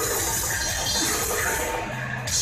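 Death metal band playing live at full volume, a dense, distorted wash of electric guitars, bass and drums heard from within the crowd. Near the end the sound briefly thins.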